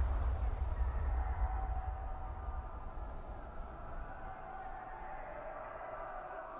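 War-film soundtrack played through a hall's loudspeakers: a deep battlefield rumble dying away over the first few seconds, under faint sustained tones.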